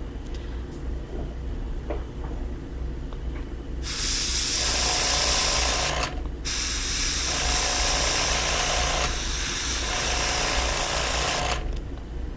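Gravity-feed airbrush spraying paint in two hisses: a short one about four seconds in, then after a brief break a longer one lasting until near the end. Light detail work, with the trigger barely pressed.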